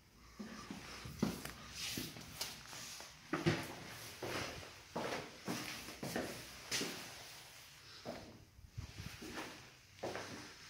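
Footsteps walking indoors at a slow pace, a short knock every half second or so, mixed with handling noise from a handheld phone being carried.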